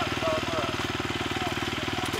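Off-road motorcycle engine idling with a steady, even pulse.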